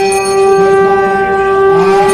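A horn blown in one long, steady note, rich in overtones.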